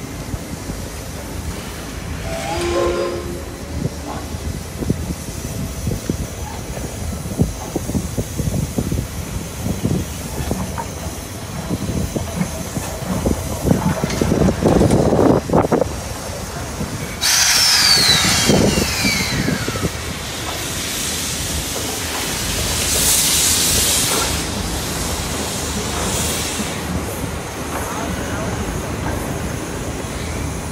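C62 steam locomotive moving slowly under its own steam, with irregular low rumbling and knocks from the engine. About seventeen seconds in, a sudden loud hiss of released steam lasts about three seconds, and a softer hiss follows a few seconds later.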